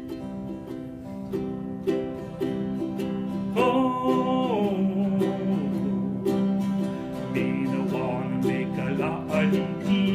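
Ukulele and acoustic guitars strumming a Hawaiian-style song intro in a steady rhythm. About three and a half seconds in, a high, held melody line comes in over the chords, wavers, then steps down.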